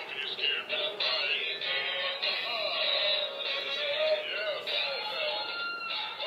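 A song with singing played through a small, tinny speaker, thin with no bass, from a miniature retro-TV Halloween decoration playing its animated show.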